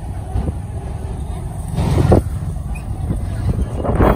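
Busy street noise: motorcycles riding close by over a steady low rumble, with a brief snatch of voices about halfway through.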